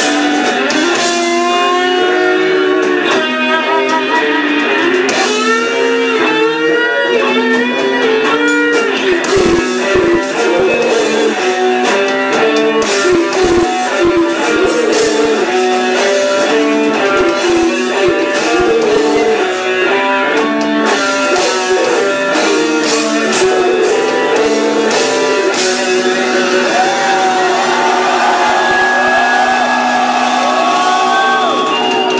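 Death metal band playing live, led by riffing electric guitars over sharp percussive hits. In the last few seconds the guitar plays bent, wavering notes.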